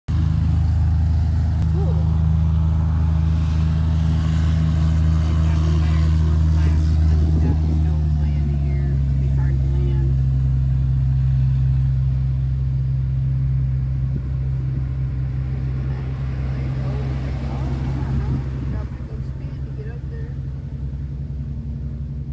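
An engine running with a steady low drone. Its pitch shifts about eight seconds in, and it fades somewhat over the last few seconds.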